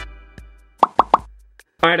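An edited transition: a short musical sting dies away, then three quick cartoon "pop" sound effects play in a row.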